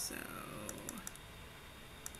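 A handful of quick, light computer clicks around the middle, from keys or mouse buttons.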